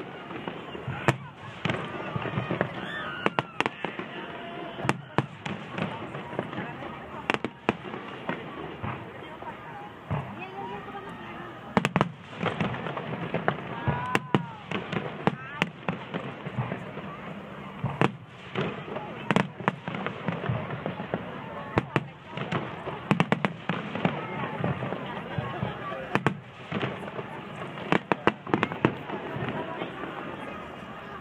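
Aerial fireworks display: shells bursting in a continuous barrage of sharp bangs, irregularly spaced and often in quick clusters.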